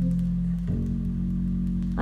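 A vinyl LP of a slow vocal ballad played through Wilson Audio Sasha DAW loudspeakers in a listening room: an instrumental passage of held chords between sung lines, with the chord changing under a second in.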